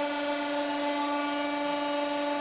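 Electric pump motor of a hydraulic press humming steadily while the press holds its load under pressure.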